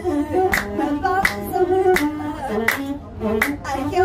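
A woman singing an Ethiopian azmari song, with sharp hand claps keeping time about every 0.7 s and a masenqo (one-string bowed fiddle) accompanying her.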